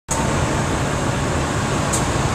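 Steady road traffic noise: a low rumble with hiss.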